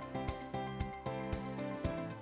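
Instrumental background music with a steady beat, a note struck about twice a second over held tones.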